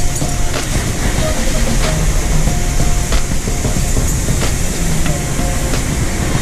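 Steady loud rush of a mountain torrent through a narrow rock gorge, with a few faint knocks.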